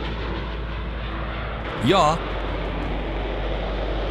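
Steady jet noise from an AV-8B Harrier's Rolls-Royce Pegasus turbofan as the aircraft flies and hovers.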